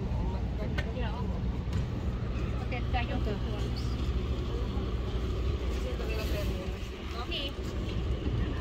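Outdoor market ambience: scattered voices of nearby people, with no clear words, over a steady low rumble.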